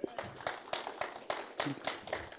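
A few people in the congregation clapping: separate, irregularly spaced hand claps, about six a second.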